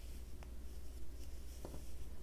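Faint scratchy rustle of yarn being worked and pulled through loops by a metal crochet hook, with two soft ticks, one about half a second in and one near the end, over a steady low hum.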